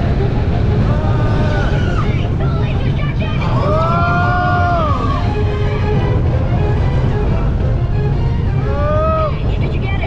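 Incredicoaster train running along the track, with a steady loud rumble and wind noise on the ride camera's microphone. A few drawn-out whoops that rise and fall in pitch come over it, the longest about four seconds in and another near the end.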